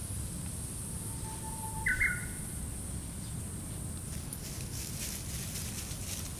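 Outdoor ambience with a steady low rumble and a high hiss; a short high chirp of two quick notes about two seconds in, and faint light rustles later from Shiba Inu puppies walking over dry leaves and grass.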